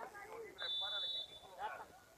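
Referee's whistle blown once: a single short, steady, high blast of under a second, beginning about half a second in. Players' voices call out faintly around it.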